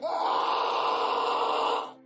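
An edited-in sound effect: a steady, breathy, noisy sound lasting nearly two seconds, starting suddenly and cutting off abruptly.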